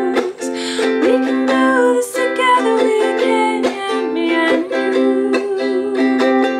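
A woman singing a gentle love song while strumming a ukulele, in a small room.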